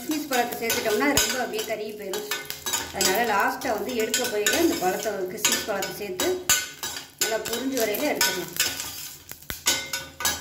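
A perforated stainless-steel ladle scraping and clinking against the bottom and sides of a stainless-steel pressure cooker, stirring cashews and raisins as they fry. There are frequent metallic clinks and wavering metal-on-metal squeals from the scraping, over a light sizzle.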